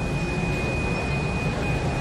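A steady high-pitched electronic tone that breaks off briefly about one and a half seconds in, over the low hum of an airport terminal hall.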